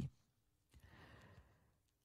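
Near silence in a pause between spoken sentences, with a faint soft breath about a second in.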